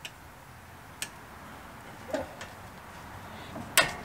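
New brake pad being worked into a front brake caliper bracket: a few light metal clicks, with a louder, briefly ringing click near the end as the pad's steel backing plate knocks against the bracket.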